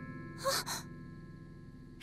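A girl's short, breathy gasp, two quick breaths about half a second in.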